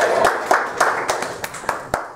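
Scattered hand claps from a small audience, irregular and thinning out, growing quieter over two seconds.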